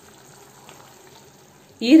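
Mutton liver simmering in its liquid in an uncovered pan: a faint, steady hiss. A voice starts just before the end.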